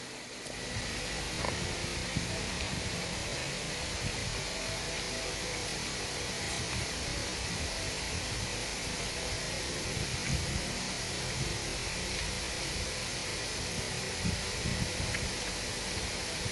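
Steady, even background hiss, like a running room fan, with a few faint soft low sounds near the middle and toward the end.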